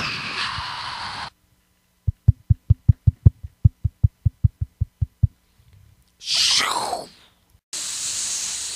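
Cartoon sound effects: a hiss that cuts off after about a second, then a run of about sixteen low, even thumps, some five a second. A short whoosh follows, falling in pitch, and a steady jet-like hiss starts near the end.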